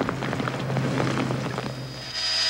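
Rain falling on a shingled roof and tarp, many small drops ticking, with a steady low hum underneath.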